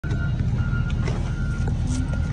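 Steady low engine rumble of a heavy vehicle running close by, with a thin high tone sounding in short on-and-off beeps over it.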